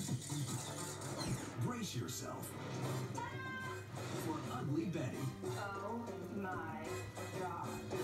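Television audio heard in the room: a trailer soundtrack of music with voices over it.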